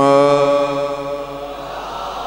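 A man's voice holding one long, steady sung note at the close of a line of a manqabat recitation, fading out about a second and a half in.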